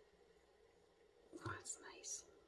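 Near silence, then a few soft whispered sounds from a person starting a little over a second in.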